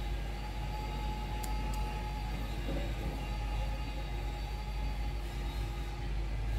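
A steady low hum of background noise, with two faint light ticks about one and a half seconds in.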